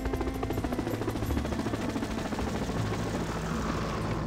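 Helicopter in flight, its rotor beating in a fast, even pulse.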